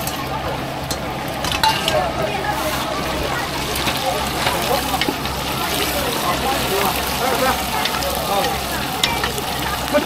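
Whole spring chicken deep-frying in a pot of hot oil, a steady sizzle. A few light clicks of steel tongs against a metal bowl come in the first seconds.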